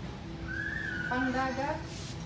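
A person whistling one high note, held for about a second, with a woman's voice under it toward the end.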